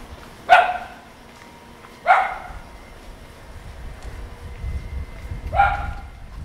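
A dog barking three times: one sharp bark about half a second in, another about a second and a half later, and a third near the end.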